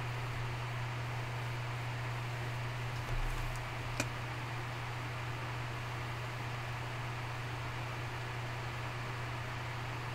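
Steady low hum with a faint hiss behind it, with a soft low bump about three seconds in and a single sharp click about four seconds in.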